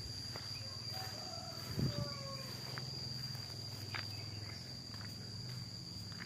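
An insect trilling on one steady high note in a garden, over a low steady hum, with a soft thump just before two seconds in and a few faint chirps.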